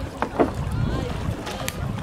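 Wind rumbling on the microphone over open water, with faint distant voices and a few short sharp knocks or splashes, the loudest a little under half a second in.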